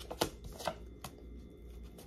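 A deck of tarot cards shuffled by hand: a few short card clicks in the first second or so, then quieter handling.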